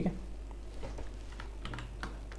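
Light computer keyboard taps: a handful of soft, irregular clicks over a steady low hum.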